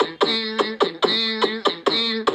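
A man making instrumental music with his mouth into a microphone: a held, pitched tone mostly on one note, broken by sharp mouth clicks in a steady rhythm.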